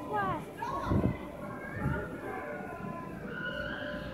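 Children's voices and calls with background chatter of kids playing, loudest in the first second or so.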